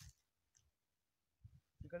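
Near silence, broken by a faint click at the start and another about half a second in, then a soft low knock, and a man's voice calling out a word near the end.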